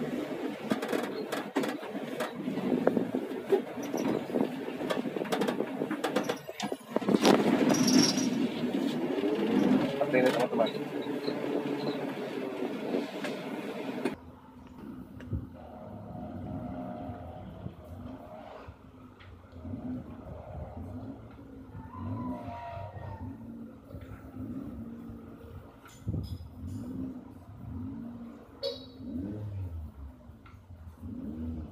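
Engine and cabin noise inside a small minivan moving slowly while being steered, with clicks. About halfway through it switches suddenly to a quieter outdoor sound of the van manoeuvring, with soft repeated low pulses.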